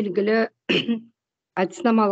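Speech: a woman talking in short phrases, with a pause a little after a second in.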